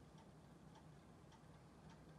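Near silence: room tone with faint, regular light ticks.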